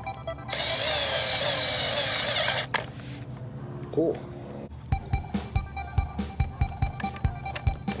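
A cordless drill runs for about two seconds near the start, driving a screw into a plastic Hot Wheels track starting gate, over background music. From about the middle on, the music's steady beat carries on alone.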